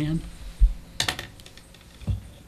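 Handling noise at a meeting table picked up by the table microphones: a low thump about half a second in, then a quick run of sharp clicks about a second in, while members raise their hands to vote.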